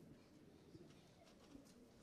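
Near silence: room tone of an auditorium, with a few faint soft sounds.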